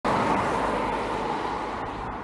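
A car driving past on the road, its tyre and engine noise loud at first and fading steadily as it moves away.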